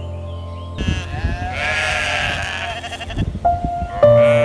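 A farm animal bleating: one long, wavering bleat starting about a second in and lasting about two seconds, over soft background music.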